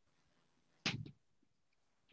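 A single short scrape of chalk on a blackboard about a second in, amid near silence.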